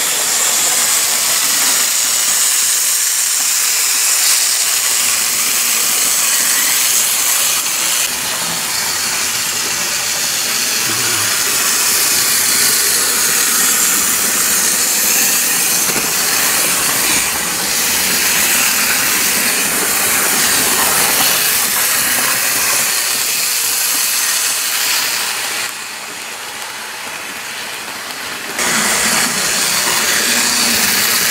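Gilbert HO-scale steam locomotive running on the track under power from its AC motor, a steady high hissing whirr of motor and wheels that drops quieter for a few seconds near the end.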